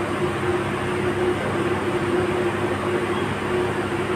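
Steady background hum and hiss, with a faint low tone that drops out now and then.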